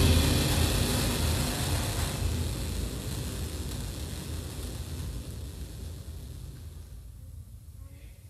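A concert band's last loud chord dying away slowly over several seconds as it rings out in the hall, the low rumble lasting longest.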